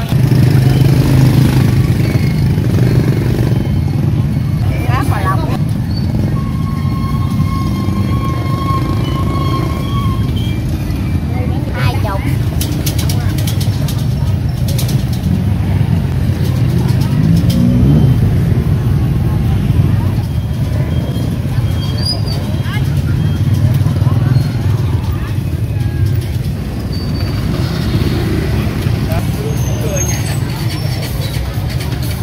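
Busy street-market ambience: motorbike engines running close by over a steady traffic rumble, with people's voices mixed in.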